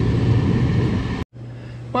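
Hot tub pump motor running with a steady rushing hum that stops suddenly just over a second in. A quieter steady low hum follows.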